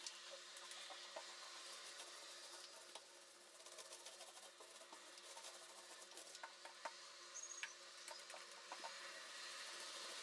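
Very faint sticky crackle and light scratching of a small paint roller rolling primer onto vinyl wallpaper, with small scattered clicks.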